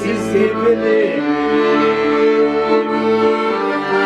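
A piano accordion playing a Kyrgyz song. Held chords sound over bass notes that change about twice a second.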